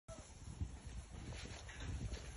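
Sheep and a goat pulling hay from a bucket and chewing, with rustling hay and irregular low thumps.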